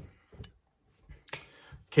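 Faint mouth clicks and short breaths from a man resting between arm exercises, with a sharper inhale a little over a second in.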